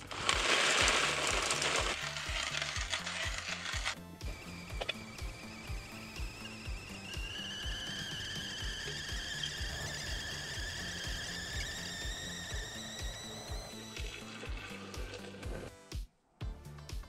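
Background music with a steady beat. Over it, a hand coffee grinder crunches beans for the first few seconds, and then a stovetop kettle's whistle starts up and slowly rises in pitch as the water comes to the boil.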